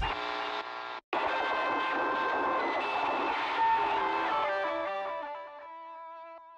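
Music: the drums stop and an electric guitar with effects lets a final wash of notes ring out, fading and thinning to a few held tones near the end. There is a brief cutout about a second in.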